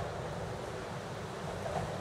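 Steady wind rumbling on a camcorder microphone, with a faint low hum underneath.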